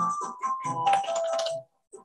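Recorded music with a steady drum beat and melody, playing back from a computer into the stream. It drops out suddenly for about half a second near the end.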